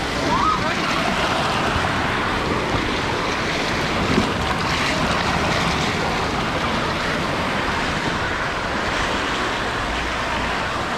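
Steady rush of water from an artificial waterfall pouring inside a rock tunnel over a lazy river, with a brief faint voice near the start.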